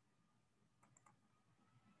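Near silence: room tone, with two faint clicks about a second in, from a computer mouse as the document is scrolled.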